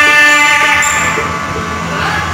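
Ceremonial temple music: one long, steady note on a wind instrument, rich in overtones, fading away over about a second and a half.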